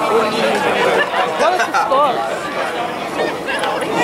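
Several people talking and calling out at once on an open field, their voices overlapping.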